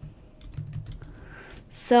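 Computer keyboard typing: a quick, irregular run of light key clicks, with a brief breath-like hiss near the end.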